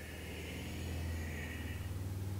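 A man's slow exhalation during cat-cow, a faint airy breath that fades out near the end, over a steady low hum.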